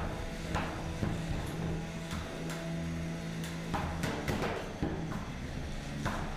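Three-pound combat robots fighting: a steady electric motor hum that stops a little past halfway, with several sharp knocks as the robots hit each other.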